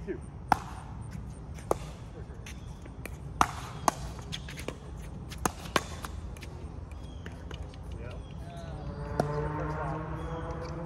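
Pickleball point: hard paddles striking the plastic ball, with ball bounces on the court, heard as about eight sharp pops at uneven spacing. The first and loudest is the serve about half a second in, just after the score is called.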